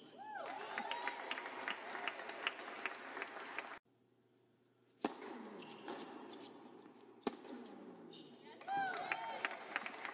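Scattered applause from a small indoor tennis crowd after a point, with a brief shoe squeak near the start; it cuts off suddenly after about four seconds. Quieter court ambience follows, with a few single knocks and short squeaks.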